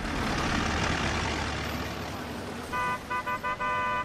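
Busy street traffic noise with a car horn honking several times in the last second or so: a few quick toots, the last one held longer.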